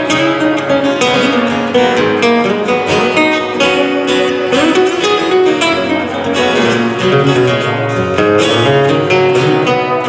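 Two acoustic guitars played together live, steady strummed chords with picked notes ringing over them in an instrumental passage.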